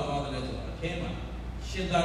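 Speech only: a Buddhist monk talking steadily, giving a sermon.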